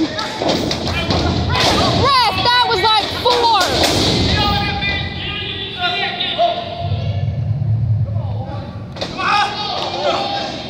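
Several thuds of wrestlers' bodies hitting the wrestling ring, with people shouting, loudest in the first few seconds.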